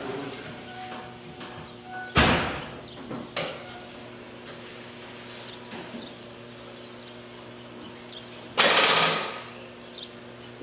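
A car door shut twice: a loud bang about two seconds in and another near the end, each dying away quickly, over a faint steady hum. No engine cranks or runs.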